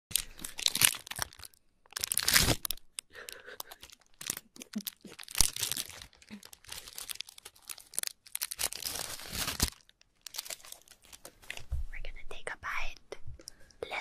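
Crinkling and tearing of a food wrapper being handled and torn open, in irregular bursts of rustling.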